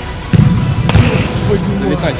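A football kicked once, a single sharp thud about a second in, over background music.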